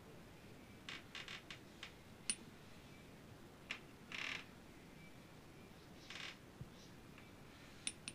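A small metal scoop faintly clicking and scraping as powder is tapped into a milligram scale's metal weighing pan. A scattered run of light ticks comes about a second in, then brief scrapes at about four and six seconds and a couple of clicks near the end.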